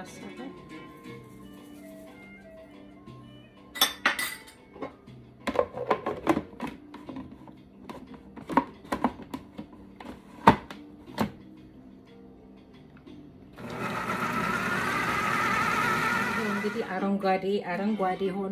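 Countertop food processor: scattered clicks and knocks as the bowl and lid are handled, then, about fourteen seconds in, the motor runs loudly for about three seconds, chopping chickpeas and cilantro into a paste. Background music plays throughout.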